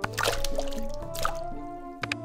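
Chopped potato pieces splashing into a pot of water, a large splash just after the start and a smaller one about a second later, over background music.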